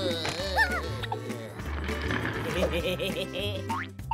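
Cartoon background music with a bouncy bass line, over wordless character squeals and cartoon sound effects. A high held tone sounds at the start, and a quick rising glide comes near the end.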